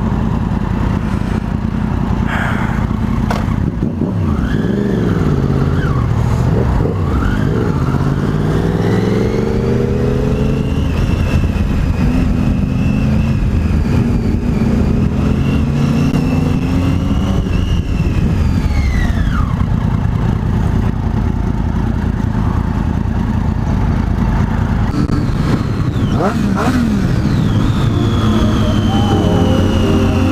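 Triumph Daytona 675's three-cylinder engine riding through city traffic, with wind noise. The engine note climbs and drops several times as it accelerates and eases off, holds high for several seconds midway, then falls away.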